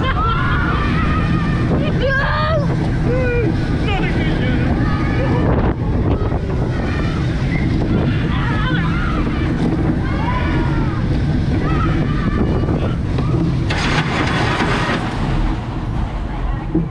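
Steel roller coaster train running along its track, heard from on board: a steady loud rumble with wind buffeting the microphone, while riders shout and scream over it. A brief, louder rush of noise comes near the end.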